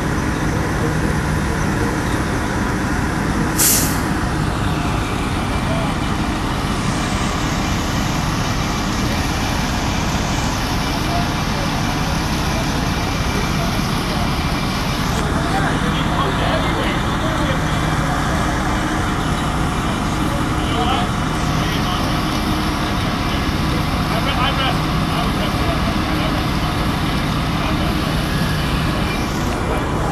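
Fire engines running steadily, a constant low rumble with a faint hum under it, and a short sharp hiss about four seconds in.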